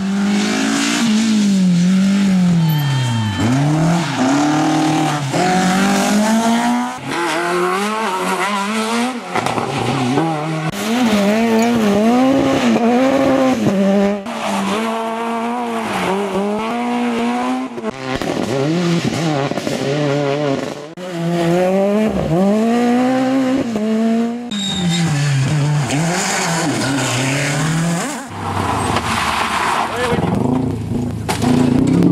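Rally cars on a tarmac stage, one after another, among them a Peugeot 207 rally car: loud engines revving hard, the pitch climbing and dropping over and over through gear changes and lifts for corners. The sound switches abruptly every few seconds from one car to the next.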